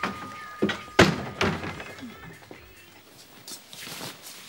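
A shop-door bell's ringing tone dies away as a door thuds shut about a second in, followed by quieter background music.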